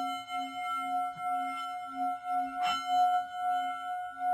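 Singing bowl ringing with a slow wavering pulse, about two beats a second, struck again about two-thirds of the way in.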